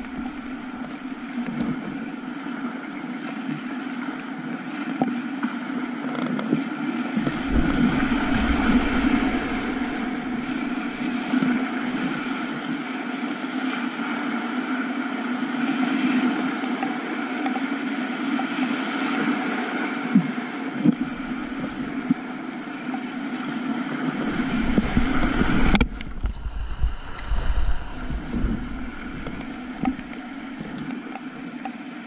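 Rushing whitewater rapids heard close up from a kayak through an action camera's waterproof housing, a steady loud hiss and roar with low rumbling buffets as water and spray hit the camera. Near the end the sound suddenly turns duller and more muffled.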